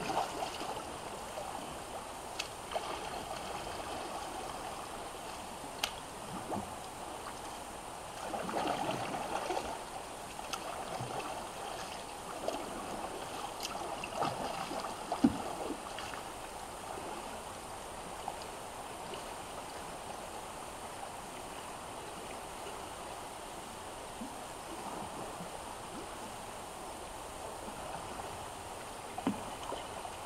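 Steady rush and ripple of shallow river water running over rocks. Scattered small splashes come from a kayak paddle, with a louder spell of splashing about 8 to 10 seconds in and a sharp knock about 15 seconds in.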